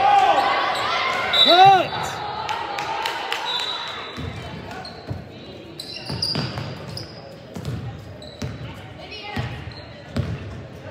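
A basketball bouncing on a hardwood gym floor, with players' and spectators' voices echoing in the large gym. The voices are loudest in the first two seconds; after that, single bounces come roughly once a second.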